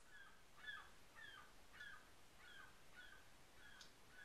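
Faint bird calls: one short, falling chirp repeated at an even pace, a little under twice a second.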